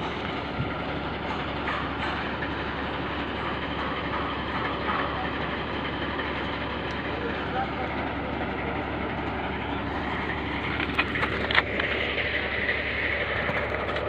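Heavy machinery running steadily, heard as a constant mechanical drone, likely the truck-mounted mobile crane's engine. A few sharp knocks come about eleven seconds in.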